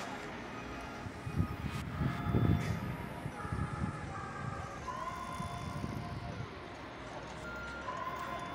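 Street traffic noise with a distant emergency-vehicle siren, a thin tone that holds and then glides between pitches. A couple of brief low rumbles come between one and three seconds in.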